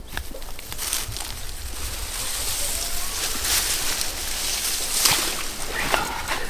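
Water sloshing and dripping in a wet carp sling holding a fish as it is lifted and carried to the river, with rustling of the wet fabric and a louder slosh about five seconds in.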